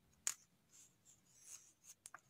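Ballpoint pen drawing short strokes on paper, faint and scratchy, with one sharp tick about a quarter second in.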